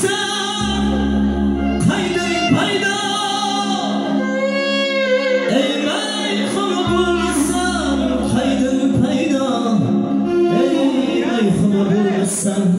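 A man singing live into a microphone over synthesizer keyboard accompaniment, both amplified through PA speakers. About four seconds in he holds a long note with vibrato.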